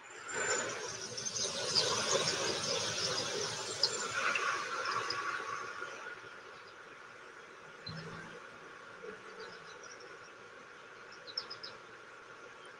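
Outdoor hillside ambience from the film's own soundtrack, heard through a video call's screen share: a rushing noise, louder for the first half, with short high chirps of insects scattered through it.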